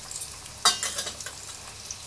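Pot of dal boiling hard on a gas stove: a steady bubbling hiss, with one sharp crackling pop about two-thirds of a second in and a few faint ticks before it.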